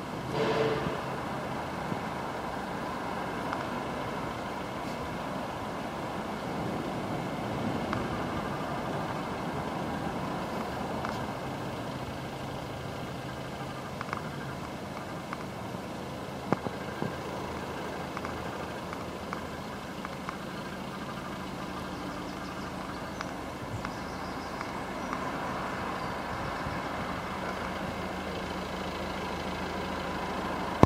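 A steady vehicle engine hum with a few faint clicks.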